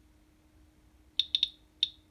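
Radalert 50 Geiger counter clicking with its audio on: three quick clicks a little over a second in, then one more near the end, each click one detected radiation count. The count rate sits near normal background while it measures a uranium glass bead.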